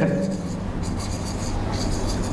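Pen writing on a board, a faint scratchy rubbing of handwriting strokes over a steady low room hum.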